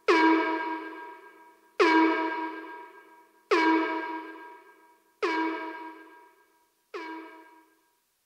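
The ending of a dubstep track: one pitched, horn-like synth stab repeats five times, about every 1.7 seconds. Each repeat dies away, and the last is much quieter, like an echo tail fading out.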